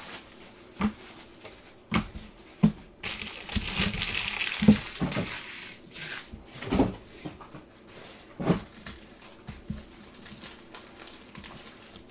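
Trading cards and their packaging being handled on a table: a few short taps and knocks, and a stretch of crinkling from about three to six seconds in.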